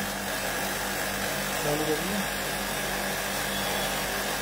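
Air conditioner running during refrigerant charging: a steady hum and fan-like whoosh that holds even throughout.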